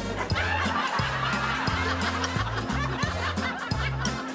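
Laughter over background music with a repeating bass line.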